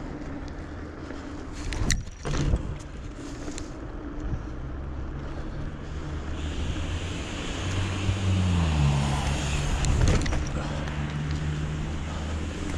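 Mountain bike rolling over a cracked asphalt path: tyre rumble and wind on the microphone, with a couple of sharp knocks about two seconds in. A low motor hum runs underneath and drops in pitch around the eight-second mark, and a higher hiss joins about six seconds in.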